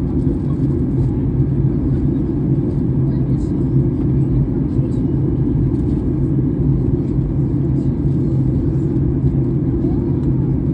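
Steady low cabin rumble of a Boeing 737-800 airliner in flight, engines and airflow heard from inside the cabin at a window seat.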